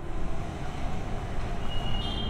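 Low, steady rumble of city traffic, with a thin high squeal starting near the end.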